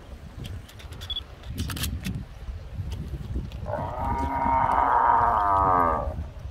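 A cow mooing once: a single long call of about two seconds that starts just past the middle and drops in pitch as it ends.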